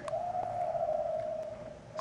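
A steady humming tone that holds one pitch, sinking slightly and growing fainter near the end.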